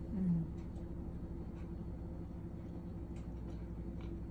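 A woman's short "mm" hum, falling in pitch, as she chews a bite of cheese, followed by faint clicky chewing sounds over a steady low background hum.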